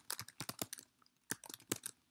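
Typing on a computer keyboard: a quick run of keystrokes, a short pause about a second in, then another quick run.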